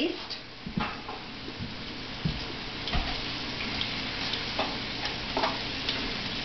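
Floured pheasant pieces sizzling as they brown in hot oil in a frying pan, with a few light knocks scattered through.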